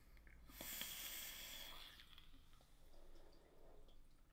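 Faint drag on a vape: air hissing through a rebuildable dripping atomiser for about a second, then a softer breath out of the vapour near the end.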